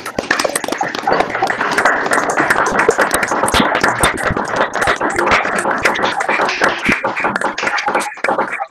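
Several people clapping over a video call, dense and unsynchronised, stopping abruptly at the end.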